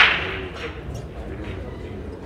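A single sharp crack right at the start, dying away within about half a second, with a faint lighter tick just after.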